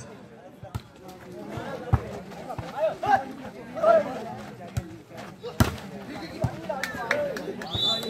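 Volleyball being struck during a rally: a few sharp hits of hand on ball, the loudest about five and a half seconds in, with players and spectators calling out.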